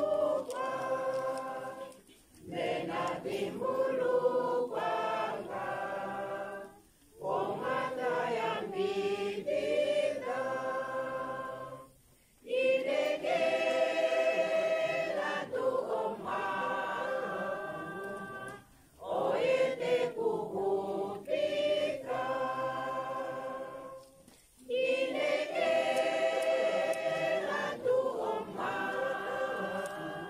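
A choir of mostly women's voices singing a hymn unaccompanied, in long held phrases with a short break for breath about every five to six seconds.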